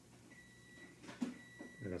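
Quiet room with a faint, steady high-pitched whine and one short soft sound a little after a second in; a man starts speaking right at the end.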